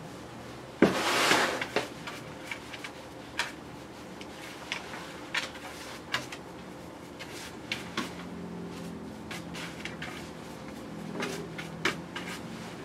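A brush worked through a miniature schnauzer's clipped coat on a grooming table: short scratchy strokes and small clicks as the dog is held and brushed, after a louder burst of noise about a second in.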